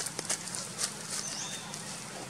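Light, irregular clicks and crackles as crab-eating macaques handle and chew twigs and dry leaves, a few sharp ones in the first second.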